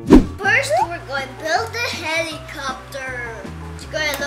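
A sudden loud transition sound effect with a falling pitch just at the start, then a child talking over background music with a steady bass line.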